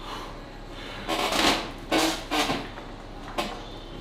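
Strained 72.5 kg lift on an arm-wrestling back-pressure cable machine: a few short rasping bursts of forced breathing and machine movement, about a second in, around two seconds and briefly near the end, over low room noise.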